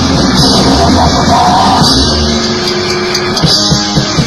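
Loud punk rock recording, a full band with electric guitars and a drum kit. About halfway through, the heavy low end thins and held notes ring out over the beat.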